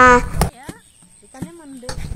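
Mostly a narrating voice: a phrase ends about half a second in, followed by a quieter pause with faint voice sounds. There are two sharp clicks, one as the phrase ends and one near the end.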